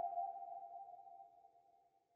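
Tail of an electronic logo sting: a steady ringing tone that fades away and is gone near the end.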